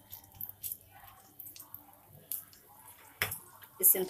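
Black mustard seeds spluttering in hot oil in a frying pan: irregular small crackles and pops, with one louder click a little after three seconds.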